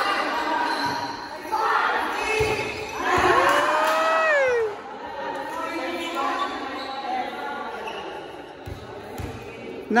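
A volleyball being struck and bouncing on a hard gym floor during a rally: a few sharp thuds that echo in the large hall. Players shout over it, with a long falling cry about three seconds in.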